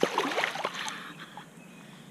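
Pool water splashing and sloshing as a swimmer moves and turns at the pool's edge, dying away after about a second.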